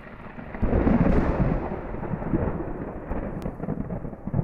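A rolling thunder sound effect, swelling to its loudest about a second in and then rumbling on.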